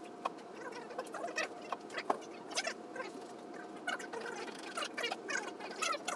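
Scattered light clicks and knocks at an irregular pace, from movers handling and strapping a grand piano, with faint indistinct shuffling between them.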